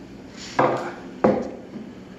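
Two sharp knocks, about two-thirds of a second apart, of hard objects set down on a wooden workbench; the first rings briefly.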